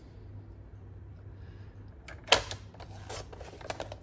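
Sliding-blade paper trimmer cutting a strip of patterned paper: a sharp click a little past halfway, then a quick run of clicks and ticks as the blade runs through.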